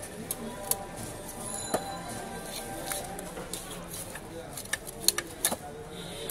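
Sharp clicks and snaps of a large catla carp being cut on a boti blade, a few in the first two seconds and a quick cluster about five seconds in, over background voices and music.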